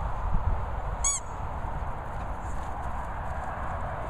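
A single short, high-pitched squeak about a second in, over a steady outdoor background hiss and low rumble.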